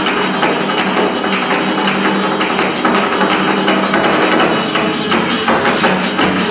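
Live flamenco: a Spanish guitar playing with rapid hand-clapping (palmas) keeping the rhythm, dense sharp claps and strikes throughout.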